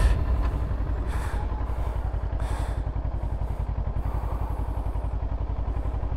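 Kawasaki Versys motorcycle engine running at low revs as the bike rolls slowly, a steady, rapid, even putter, with a few short puffs of hiss in the first few seconds.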